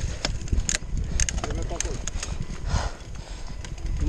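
CTM Scroll enduro mountain bike rolling down a rough, rocky trail: a steady rumble of wind and tyres on the camera mic, with frequent sharp clicks and rattles from the chain and frame over the rocks.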